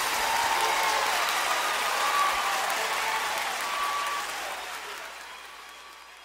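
Audience applause from a live recording, fading out steadily.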